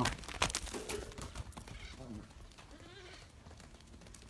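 A young goat bleating several short times, the calls rising and falling in pitch, with a few loud knocks in the first second.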